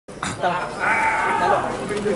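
A man speaking: a short, drawn-out stretch of speech that the recogniser did not catch, cut in abruptly as the audio begins and trailing off in the last half second.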